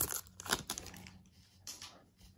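Foil trading-card pack wrapper being torn and crinkled open by hand: a quick run of crackles in the first second that thins out, with a faint rustle near the end.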